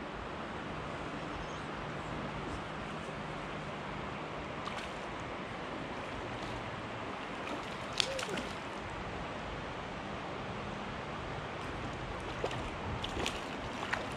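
Steady rush of shallow stream water flowing over rocks, with one brief splash about eight seconds in from a trout breaking the surface.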